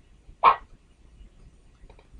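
A single short sound effect from the slide show's animation, one sharp burst about half a second in.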